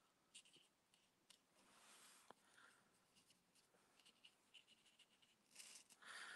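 Near silence, with faint short scratches of a fine watercolour brush stroking paper.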